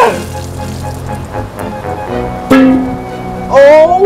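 Loud wordless yelps from a person having cold water poured over his head: one at the start, one about halfway through, and a rising one near the end. Under them is water splashing and a steady music bed.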